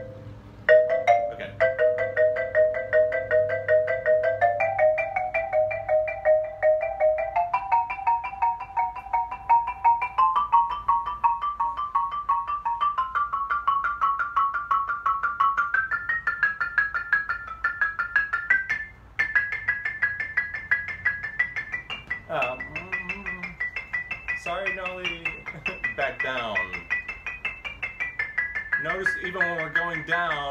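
Xylophone played with two mallets: a fast, even run of double stops, two bars struck together, climbing step by step up the scale over about twenty seconds. After a brief break it carries on in the upper register, and a voice comes in briefly a few times near the end.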